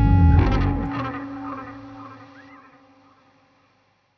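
Closing chord of a rock band with electric guitar through effects: the loud held chord breaks off about half a second in and rings out, fading away over about three seconds.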